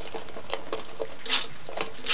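Light clicks and taps of hands pressing neodymium magnets onto the bottom of an upturned plastic bin, then a short scratchy rasp a little past halfway as sticky tape is pulled from a dispenser.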